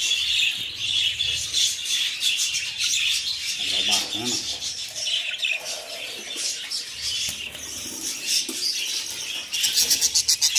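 Budgerigars chattering and chirping continuously, a dense, high, rapid warble from several birds.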